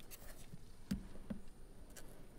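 Quiet pause filled with faint rustling, with two soft knocks about a second in, the first louder, typical of papers or a microphone being handled before a speaker begins.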